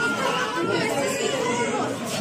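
Several people talking over one another in a room: overlapping chatter with no single clear voice.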